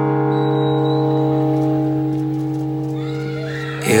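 Acoustic guitar chord left ringing after a strum, slowly fading with no new strokes; just before the end a new strum comes in with the singing voice.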